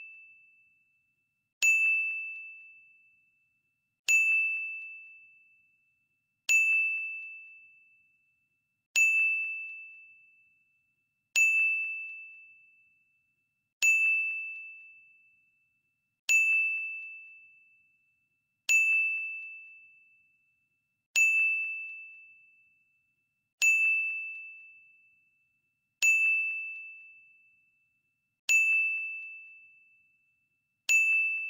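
Countdown timer sound effect: a single high, bell-like ding struck about every two and a half seconds, each ringing out and fading before the next, twelve in all, one for each tick of the countdown.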